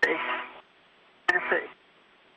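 Two brief bursts of speech over a narrowband space-to-ground radio link, each starting with a sharp click of the transmission keying on, with a faint radio hiss between them.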